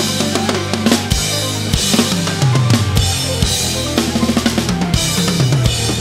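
A large acoustic drum kit played fast and busy: kick drum, snare and cymbal hits over a full band backing track of shifting bass and melodic lines, in a progressive metal instrumental.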